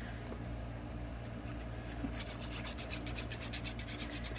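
Plastic nozzle of a liquid glue bottle rubbing and scratching across the back of a small cardstock panel as glue is laid on. It is faint, with quick little ticks that come more densely in the second half, over a low steady hum.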